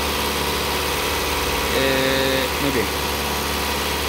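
Car engine idling steadily, heard close up at the open engine bay of a Mitsubishi Outlander.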